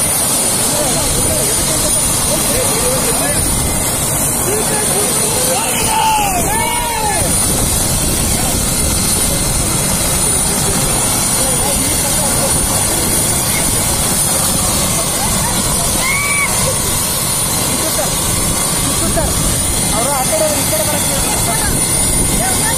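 Helicopter with its rotor turning on the ground, running as a loud, even rush with a steady high whine from the turbine. A few raised voices come through now and then.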